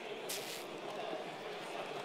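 Murmur of many people talking at once in pairs across a large hall, no single voice standing out. A short high hiss is heard about a third of a second in.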